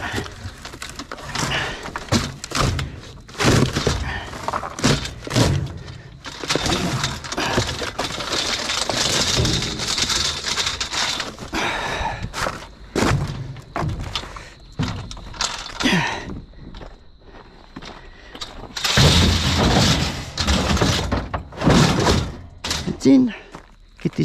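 Metal frame and cardboard boxes being shifted around inside a steel dumpster: irregular knocks, clanks and thuds, with longer stretches of scraping and rustling cardboard around the middle and again near the end.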